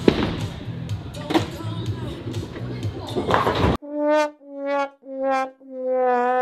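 A bowling ball is released onto the lane with a knock, over the murmur of a busy bowling alley. About four seconds in, the sound cuts to a 'sad trombone' sting: four swelling brass notes, each slightly lower than the last, the final one held. It is a comic send-up of a poor bowl.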